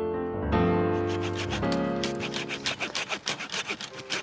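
Soft piano music, and from about a second in a fast run of rasping scrapes: pruned grapevine canes being pulled and dragged off the trellis wires.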